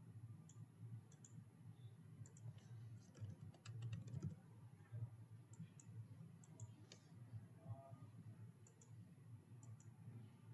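Faint computer mouse clicks and a few keystrokes, coming in small scattered clusters over a low steady hum.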